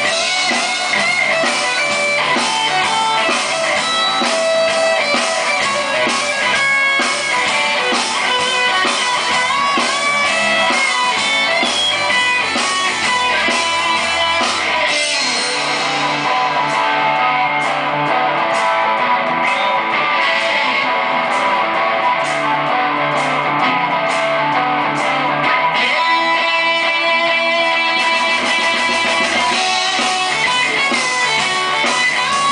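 Two electric guitars played together through an amplifier, Telecaster-style guitars, in a rock style. About halfway through the deep low end drops away and the playing turns to a choppy, rhythmic strum for some ten seconds before the fuller part comes back near the end.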